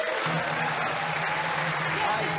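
Studio audience applauding steadily, with music playing underneath.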